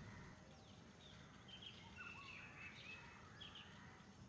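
Near silence, with a few faint, short bird chirps in the background.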